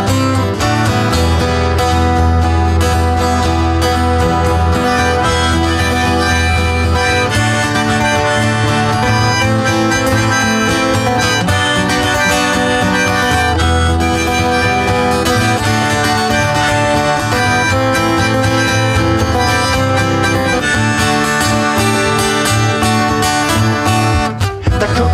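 Instrumental break of a pop-folk song played live: strummed acoustic guitars over a bass line, with a held melody line over the top.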